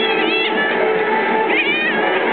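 Shih tzu puppy giving two short, high whining squeals that bend in pitch, one at the start and one about a second and a half in, during rough play. Background music with guitar plays throughout.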